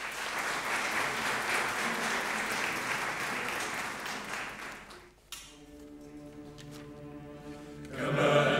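Audience applauding in a church hall for about five seconds, the clapping dying away. Then a quiet, steady held chord from the instrumental accompaniment begins.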